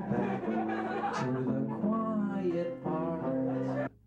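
Two electric guitars played live with a man singing along, cutting off abruptly just before the end.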